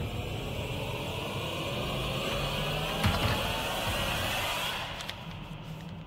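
A dramatic rising whoosh sound effect over a low background score. It swells for about four seconds, with a sharp hit about halfway, then fades near the end.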